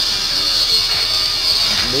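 Steady background noise with a high hiss, faint voices under it, and a spoken word at the very end.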